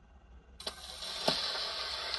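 An HMV Model 102 wind-up gramophone's needle set down onto a spinning 78 rpm shellac record: a soft touchdown about half a second in, then steady surface hiss from the lead-in groove with two sharp clicks, before the music starts.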